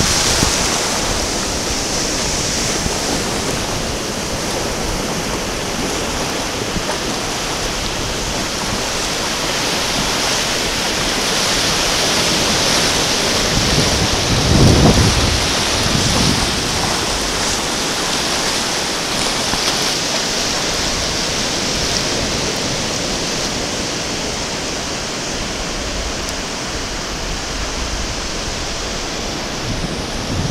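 Ocean surf breaking and washing in over shallow water: a steady rush of waves and foam. It swells briefly with a low rumble about halfway through.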